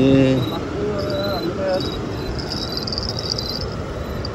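Crickets chirping in a high trill, loudest around the middle, over a steady background hiss. A short voice sound comes at the very start and brief voice-like sounds about a second in.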